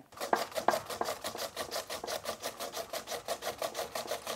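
Raw potato being grated by hand on a plastic-framed grater over a cloth: quick, even rasping strokes, about eight a second.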